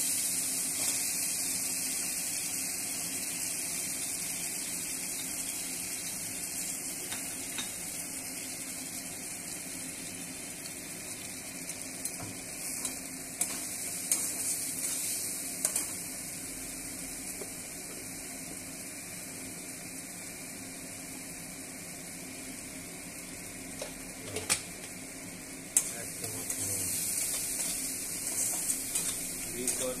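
Spice paste frying in oil in a steel kadai, sizzling with a hiss that slowly fades. A spatula stirs and scrapes against the pan in spells of short clicks and scrapes, around the middle and again near the end.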